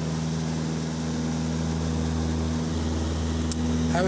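Steady low drone of a light aircraft's engine and propeller, heard inside the cabin in cruising flight.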